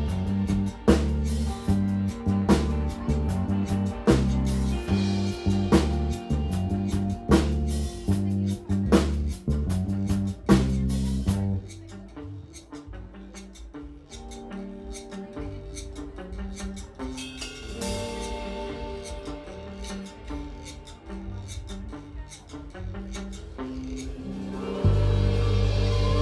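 Live rock band playing: electric guitars and keyboard over a drum kit hitting regular accents about every second and a half. About halfway through, the drums drop out and the band falls to a quieter passage of held notes, and a loud, low sustained sound comes in just before the end.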